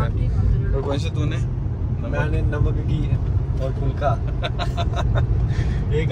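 Steady low road and engine rumble inside the cabin of a moving Chevrolet Sail hatchback, with a few brief snatches of talk over it.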